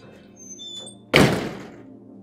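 A decorative metal front door shutting with one loud thunk about a second in, over soft background music.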